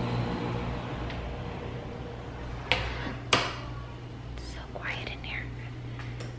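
Two sharp clicks of a door latch about half a second apart, a door being opened and shut, over a steady low hum.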